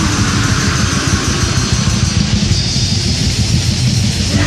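Heavy metal band playing on a demo recording: distorted electric guitars, bass guitar and drums, dense and steady throughout.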